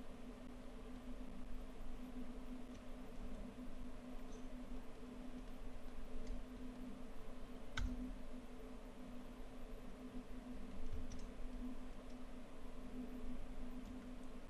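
Quiet room tone with a steady low hum, broken by a few faint, scattered clicks from operating the computer, the clearest about eight seconds in.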